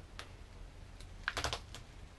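Masking tape being peeled off a surfboard's rail from a tack-free epoxy hot coat: a few sharp crackling clicks, bunched together about a second and a half in.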